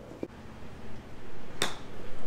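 Golf club striking a golf ball off an artificial-turf hitting mat on a short chip shot: one sharp click about a second and a half in.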